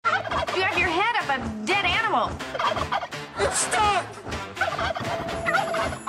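A turkey gobbling again and again, the calls wavering rapidly up and down in pitch.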